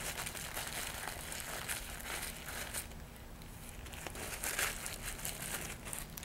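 Paper tissue rubbing and crinkling against a glass microscope slide as old oil is wiped off it, in faint uneven strokes.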